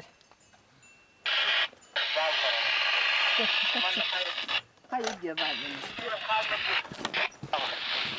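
Handheld two-way radio receiving: a loud hiss of static, starting about a second in, with a voice coming through it faintly. The hiss breaks off briefly, then returns with short bursts of voice.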